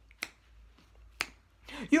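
Two sharp finger snaps about a second apart, keeping time for unaccompanied singing.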